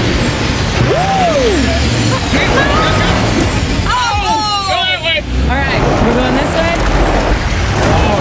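Cummins twin-turbo diesel engine in a lifted Ford Bronco working hard under throttle as the truck crawls up over rocks, belching black smoke. The occupants whoop and yell over the engine, loudest about a second in and again around the middle.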